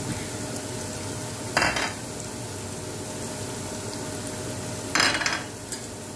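Chopped onions, garlic and whole spices frying in oil and butter in a pot, with a steady sizzle. Twice, about a second and a half in and again about five seconds in, there is a brief clatter as ground spices are tipped in from a plate.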